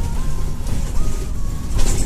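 Inside a moving city bus: steady low rumble of the engine and road, with a short hiss near the end.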